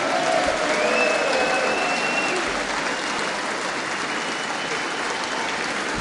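Long, steady applause from a large audience filling a large hall.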